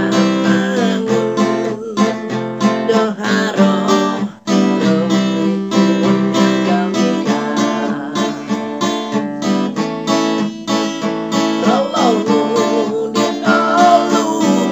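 Acoustic guitar strummed in a steady rhythm, with a man singing over it in phrases. The strumming breaks off for a moment about four seconds in.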